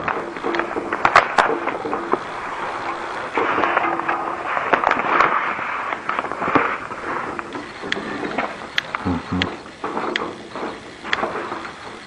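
Plastic lamination film rustling and crackling as it is handled and drawn over the laminator's top roller, with many scattered sharp clicks.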